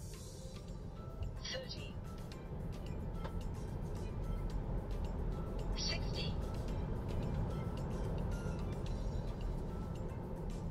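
Road and tyre rumble inside the cabin of a Tesla Model 3 Long Range, growing steadily louder as the electric car accelerates toward 60 mph in chill mode, with music in the background.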